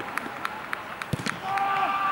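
Players calling out to each other during a football match on an artificial pitch, with quick clicks of running feet and a single thump about a second in. A drawn-out shout carries through the last half second.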